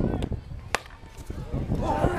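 Softball bat striking a pitched softball: one sharp crack about three quarters of a second in.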